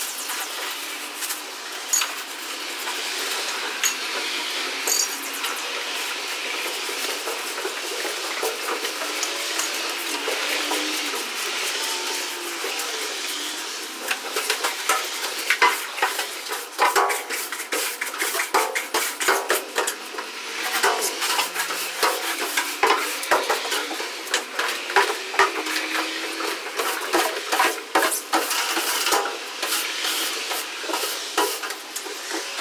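Long-handled tools scraping and scrubbing the old wooden floor of a stripped school bus to lift ground-in dirt. It begins as a steady scratching, and about halfway through it turns into many sharp, irregular scrapes and clicks.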